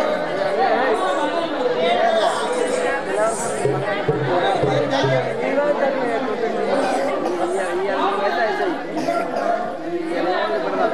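Actors' voices delivering lines in a Telugu folk drama, over instrumental music, with a low held note for about a second and a half near the middle.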